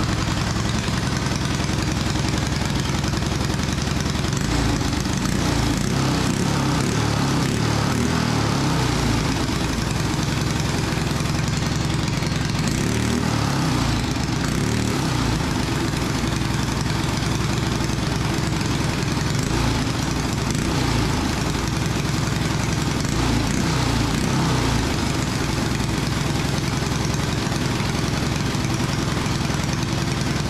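A go-kart's Predator small engine, built by DRE Horsepower, running steadily on the stand.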